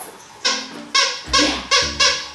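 A plush squeaky dog toy squeezed four times in quick succession, short high squeaks about two a second.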